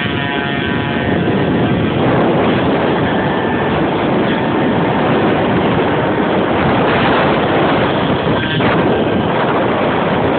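Moped engine running at road speed under a passenger, a steady engine note clear for the first couple of seconds, after which rushing wind noise on the microphone covers most of it.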